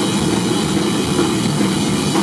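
A rock trio of guitar, bass and drums playing live and loud, a dense, steady wall of distorted sound with little distinct drum hitting.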